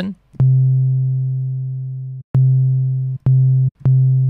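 808-style sine bass from the Serum software synthesizer, played as four notes at the same steady pitch. Each note starts with a click and fades slowly on a long amp-envelope decay; the first rings for about two seconds and the later ones are cut off sooner by the next note.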